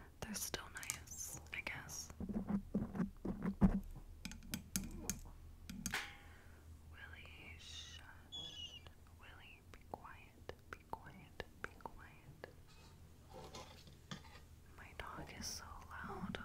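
Long acrylic fingernails tapping and clicking close to a microphone in quick, irregular clicks, thickest in the first few seconds and sparser later, with soft whispering in between.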